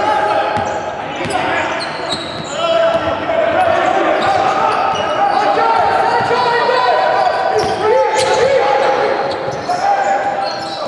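Basketball dribbled on a hardwood gym floor during live play, with players' voices calling out and echoing around a large sports hall.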